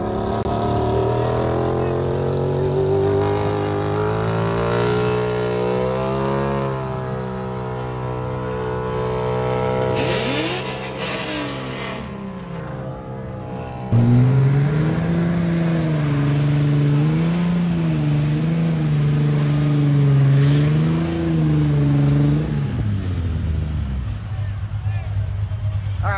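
Car burnouts: an Audi A4 sedan held at high revs while spinning its tyres into smoke, then, after a sudden cut about 14 seconds in, a louder Nissan 350Z V6 revving up and down in quick repeated surges as it slides through its burnout.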